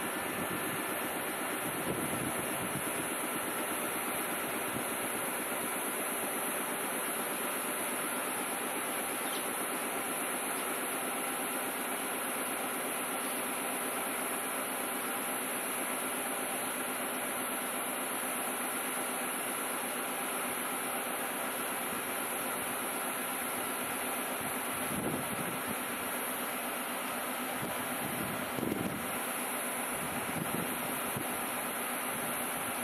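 Steady hum and hiss of a stationary Choshi Electric Railway 2000-series electric train's onboard equipment running at the platform, with two brief faint swells near the end.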